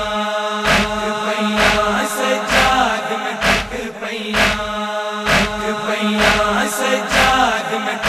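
Male voices chanting a drawn-out noha lament line over rhythmic matam (chest-beating) slaps, evenly spaced at a little under one a second.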